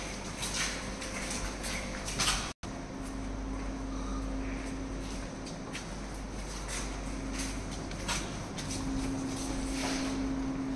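Footsteps on a hard tiled floor, irregular knocks every half second or so, over a steady low hum that sets in after a brief dropout about two and a half seconds in.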